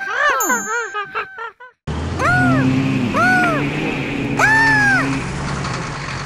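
Cartoon sound effects: a quick run of short pitched chirps that rise and fall, then a short break. After it comes a steady low engine-like hum with three rising-and-falling tones over it.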